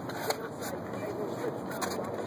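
A couple of short sharp clicks and a scrape from a dancer's shoes on a concrete sidewalk, over low voices.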